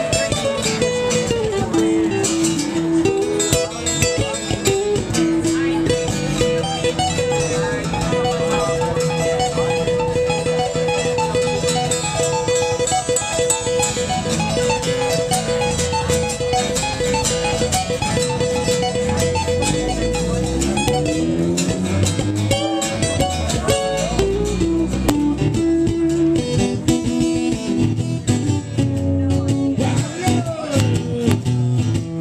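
Two amplified acoustic guitars playing a blues song, lead lines with sliding notes over strummed chords.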